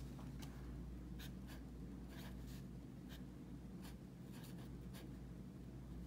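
Felt-tip pen writing on lined notebook paper: a series of faint, short scratching strokes as a word is written.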